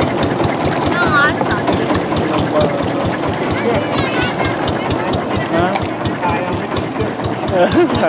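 Long-tail boat engine running steadily with a fast, even beat. Voices call out over it now and then.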